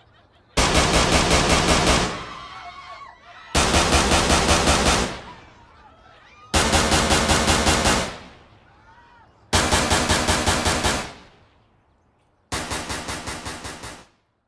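Five bursts of automatic gunfire, used as a sound effect, each about a second and a half long at about seven shots a second. A short echo fades after each burst, with about three seconds between burst starts.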